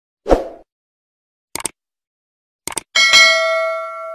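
Subscribe-button animation sound effects: a soft thump, then two quick double clicks about a second apart, then a bell ding near the end that rings on and fades.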